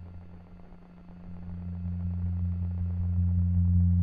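Background music: a low, sustained synth drone that dips and then swells steadily louder from about a second in.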